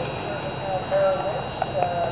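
Horse's hoofbeats at a trot on arena sand, with voices in the background.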